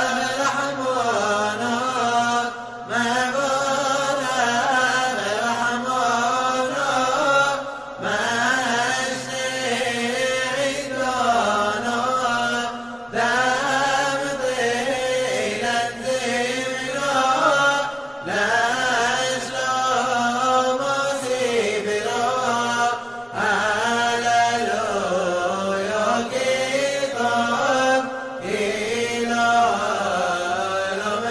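Male voice chanting a Simchat Torah piyyut in the Yemenite style: long, winding sung phrases, each broken off by a short pause about every five seconds.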